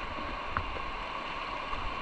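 River water running over shallow rapids: a steady rush of water close to the microphone, with a faint tick about half a second in.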